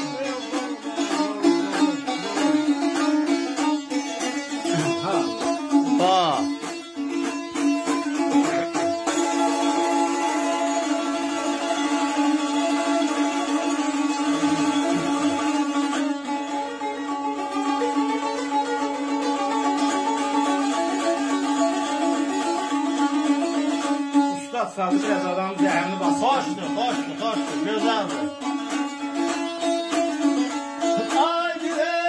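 Azerbaijani saz, a long-necked lute, played with a plectrum, a steady drone note ringing under the plucked melody.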